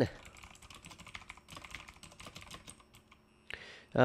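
Typing on a computer keyboard: a run of quick, light keystrokes as a label is typed, ending near the end with a brief hiss.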